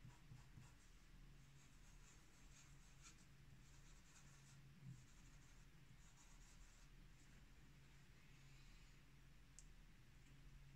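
Faint scratching of a freshly reground cross point fountain pen nib writing test strokes on paper, over a low steady hum.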